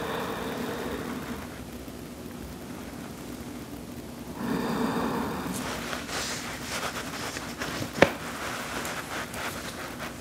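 Breathing of a person holding a seated forward fold, two long breaths, then rustling and small clicks as she shifts her body and hands on the yoga mat, with one sharp click about 8 seconds in.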